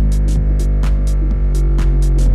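Large subwoofer playing a loud, steady deep bass test tone whose pitch steps down about a second and a half in, with short sharp rattles several times a second over it.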